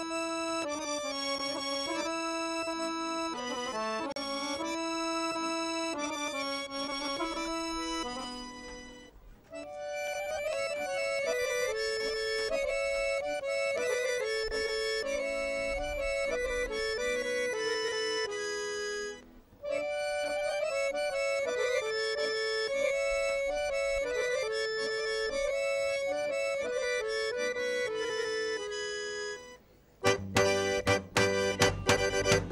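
Solo accordion playing a Bulgarian folk dance melody in three phrases, with brief breaks about nine and nineteen seconds in, fading out just before the end.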